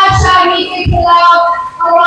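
A woman singing into a microphone in long, high held notes, carried loud over a loudspeaker system, with a few low thumps beneath.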